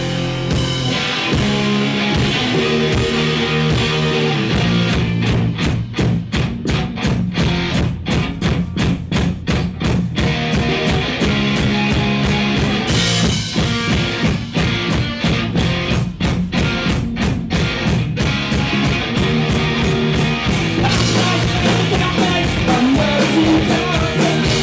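Live rock band playing an instrumental passage: electric guitars through amplifiers over a drum kit. Through the middle the band plays a run of fast, evenly repeated strokes.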